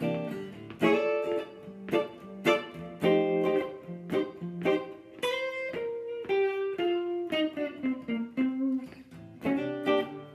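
Archtop hollow-body guitar playing a blues rhythm part of short, repeated ninth-chord strikes in C, with the root accented on the A string and a half-step move into the chords. In the middle a run of single notes falls step by step.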